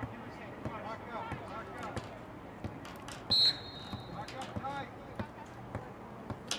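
A single short, shrill referee's whistle blast a little over three seconds in, over distant voices from the field and sideline.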